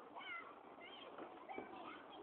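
Faint, distant children's voices: short high-pitched calls and squeals from across the field.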